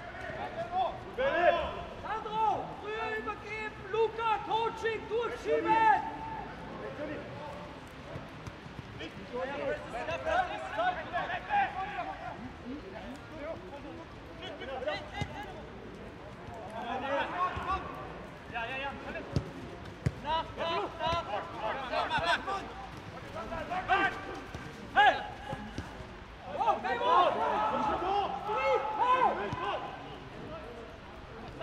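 Footballers shouting and calling to one another on the pitch in several bursts, with occasional thuds of the ball being kicked.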